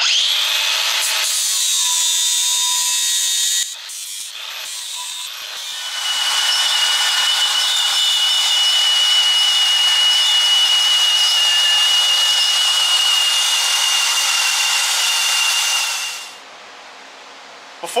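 Cordless angle grinder grinding paint off a steel hitch plate. It makes a short run of about three and a half seconds, eases off briefly, then makes a longer steady run with a high motor whine that stops about two seconds before the end.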